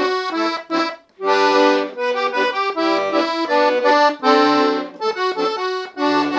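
Leticce piano accordion playing a slow melody in thirds on the right-hand keyboard, two notes sounding together, with a few low bass notes under it. The playing stops briefly about a second in, then runs on.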